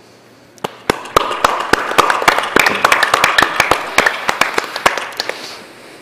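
Audience applauding: dense, irregular clapping that starts about half a second in and dies away near the end.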